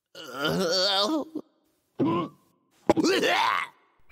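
A man's voice groaning and moaning three times, the first one long with a wobbling pitch, the others shorter: groans of stomach pain from food poisoning.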